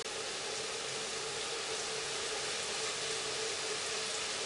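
A steady, even hiss with a faint low hum from a stovetop where a pot of mushrooms is stewing.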